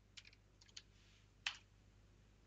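A few faint computer keyboard keystrokes in near silence, the clearest about one and a half seconds in.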